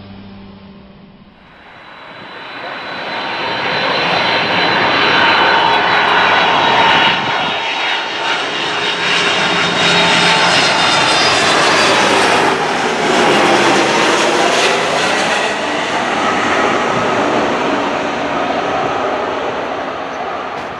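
Airbus CC-150 Polaris (A310) jet airliner on low final approach, its turbofan engines building from faint to loud over the first few seconds and holding a loud whining roar. As it passes, the whine falls in pitch, then the noise eases slightly toward the end.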